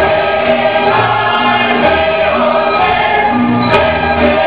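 Serbian folk dance music with singing and a steady, repeating bass beat, with one sharp tap near the end.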